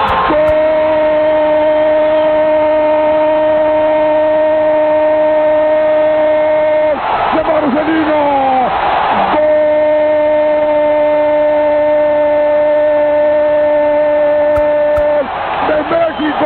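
A football commentator's long drawn-out goal cry, one shout held at a single steady pitch for about seven seconds, a brief break for breath and crowd noise, then held again for about five more seconds.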